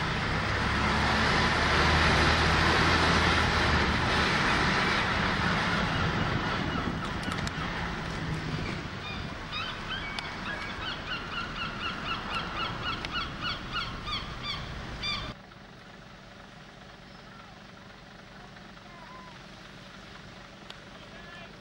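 Wind noise on the microphone and engine hum from the open top deck of a moving bus, loudest in the first few seconds and then easing off. Partway through, a bird calls over and over, about two calls a second, until the sound cuts off abruptly to a quieter steady hiss.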